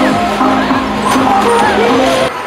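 Bumper cars running on the rink under loud music, with people's voices and a brief knock about a second in.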